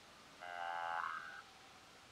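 A single buzzy, steady pitched sound about a second long, starting about half a second in, from the animated cartoon's soundtrack as it plays back.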